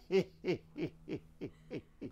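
A man laughing in a run of short hooting 'ha' pulses, about three a second, each dropping in pitch and fading out towards the end.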